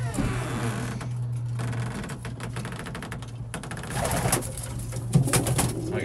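Domestic pigeons cooing in a small wooden loft over a steady low hum, with a run of sharp knocks and rattles about four to five seconds in.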